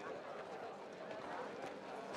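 A crowd of many people talking at once, faint, with the voices overlapping into an indistinct hubbub.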